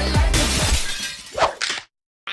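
Trailer music with a bass line, broken about a third of a second in by a shattering crash, like breaking glass, that fades over about half a second. The music and sound cut off just before the end.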